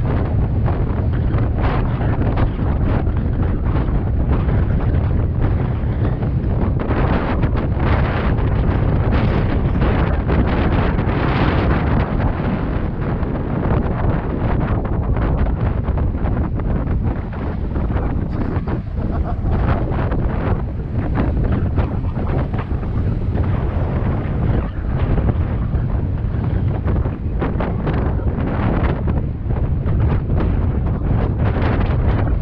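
Heavy wind buffeting a helmet-mounted camera's microphone on a fast mountain-bike descent, a steady low rumble with tyre noise and frequent short jolts from the rough dirt track.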